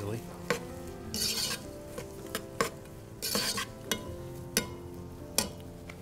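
Metal spoon knocking and scraping in a pot of onion and green pepper sautéing in butter, breaking up chicken bouillon cubes: a string of sharp taps with two short scraping swishes, over a light sizzle.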